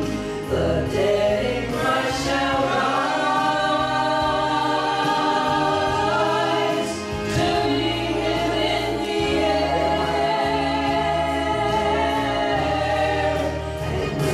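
Three women singing a gospel song in harmony into microphones, over instrumental accompaniment with sustained bass notes.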